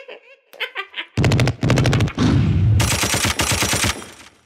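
Rapid automatic gunfire in two long bursts, beginning about a second in, each a fast run of sharp cracks, with a short break about two seconds in. A few brief, high voice-like sounds come just before the shooting.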